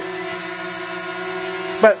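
DJI Mavic Mini quadcopter hovering in place, its four propellers giving a steady hum made of several held pitches. A short spoken word cuts in near the end.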